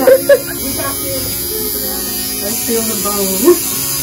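Tattoo machine buzzing steadily as an artist tattoos a hand.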